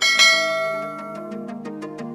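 A single struck bell chime, a notification-bell sound effect, rings out at the start and fades away over light background music.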